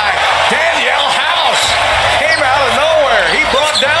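Basketball game on a hardwood court: sneakers squeak in short sharp chirps again and again as players run the floor, and the ball bounces, over the steady noise of the arena crowd.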